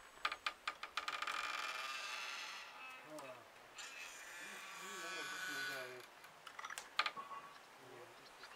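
Old wooden door creaking on its hinges in two long creaks as it swings open and back, with sharp knocks at the start and again near the end.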